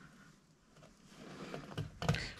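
Faint rustling of blue tape and a plastic stencil being handled and pressed down by hand, rising from about a second in, with a few small clicks near the end.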